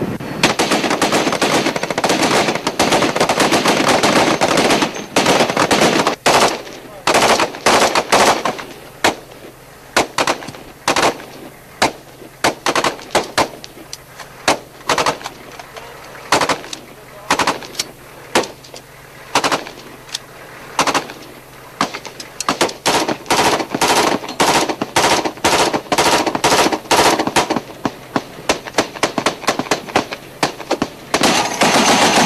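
Machine-gun and rifle fire on a live-fire range: nearly continuous fire for the first five seconds or so, then single shots and short bursts about every half second to second, growing denser again past the twenty-second mark.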